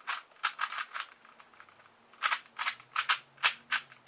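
Plastic 3x3 puzzle cube being turned quickly by hand: a run of sharp, crispy clicks as the layers snap round, with a short pause after about a second before a faster run of turns.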